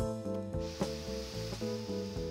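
A FEND nasal mist bottle squeezed and held, giving a steady hiss of saltwater mist that starts about half a second in, over background music.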